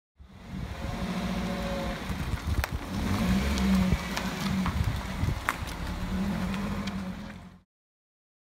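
2003 Toyota Celica's four-cylinder engine running as the car drives past, a steady low hum with a few sharp clicks. The sound cuts off suddenly near the end.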